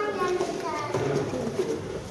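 Indistinct background voices of visitors, mostly high-pitched children's voices, talking and calling.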